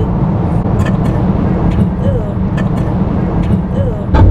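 Steady low road rumble inside a moving car's cabin, from tyres and engine at highway speed, with a few faint brief vocal sounds over it.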